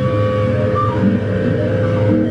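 Yamaha BB electric bass run through effects pedals, a noisy drone holding one steady tone over a dense low rumble.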